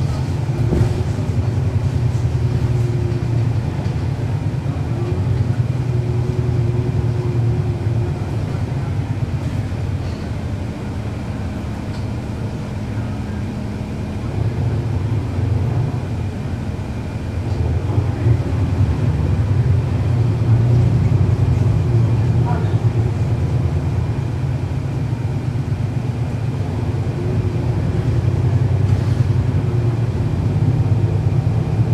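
A 2011 NABI 40-SFW transit bus's Cummins ISL9 diesel engine running under way, heard from aboard the bus. It eases off for several seconds midway, then pulls harder again.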